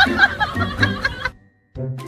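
Chuckling laughter over background music, cut off abruptly about a second and a quarter in, followed by a brief silence.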